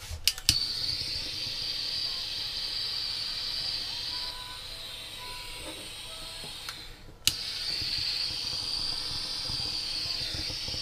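Small handheld gas torch clicking alight and burning with a steady hiss. Near the middle the hiss dies down, then a second click relights it and it hisses on strongly.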